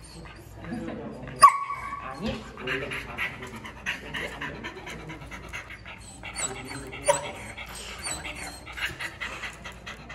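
Border collie panting rapidly with its mouth open, mixed with voices. A brief high-pitched squeak comes about a second and a half in, and another near seven seconds.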